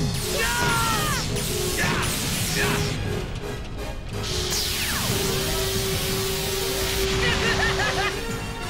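Cartoon laser-blast sound effects over a music score: a few descending whistling zaps in the first two seconds, then a sustained hissing energy-beam blast from about four and a half to seven seconds in.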